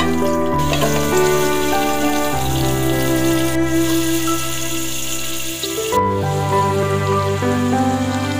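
Background music with slow held chords, over a steady sizzle of hot oil in a cooking pot as drumstick pieces and chopped onion go in to fry.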